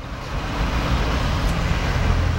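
Road traffic noise: a vehicle's low rumble with a hiss of road noise, swelling in at the start and holding steady.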